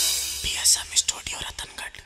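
The song's music dies out about half a second in, followed by a short whispered voice with sharp hissing 's' sounds, fading away.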